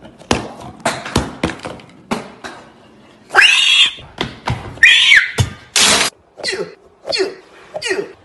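Several sharp knocks and clatters of objects being knocked over on a hard counter, then two loud screams, a short harsh burst of noise, and a run of short cries that fall in pitch.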